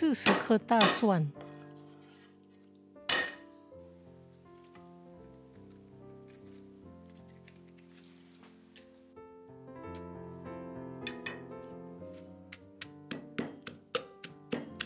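Garlic cloves clattering onto a wooden chopping board in a short burst of loud knocks at the start, with one more knock about three seconds in. Near the end comes a run of quick, quickening taps as a pestle pounds garlic in a clay mortar. Background music plays throughout.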